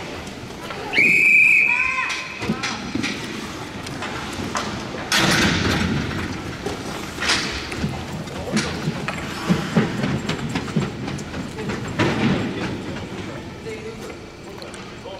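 An ice hockey referee's whistle blown once, about a second in, a short shrill blast that is the loudest sound here. After it come voices and scattered knocks around the rink as the players set up for a faceoff.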